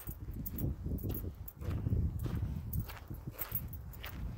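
Footsteps and rubbing from a handheld camera while walking outdoors: irregular light clicks over a low rumble.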